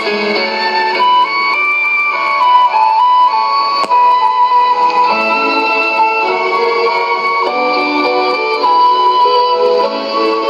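Instrumental music from a shortwave AM broadcast on 6055 kHz, received on a Sony ICF-2001D receiver. A melody moves in steps of held notes, with one brief click about four seconds in.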